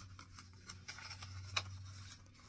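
Soft rustling and light taps of paper pages being handled and turned by hand in a handmade paper-bag journal, with one sharper click about one and a half seconds in, over a faint steady low hum.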